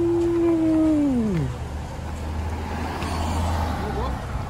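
A man's long, drawn-out 'ooooh' of admiration, held at one pitch and then sliding down about a second and a half in. A steady low hum runs underneath.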